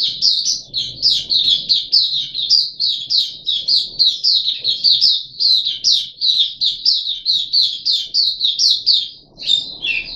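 A caged white-eye (mata puteh) singing a long, rapid run of high chirping notes, about four a second, broken only by a brief pause near the end.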